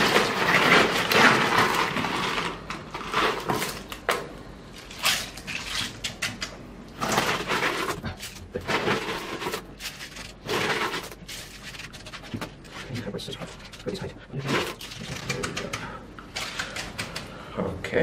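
Gloved hands scraping and pushing coarse granular bonsai soil across a clay-walled slab, heaping it into a low mound: gritty rustling and scraping in irregular bursts.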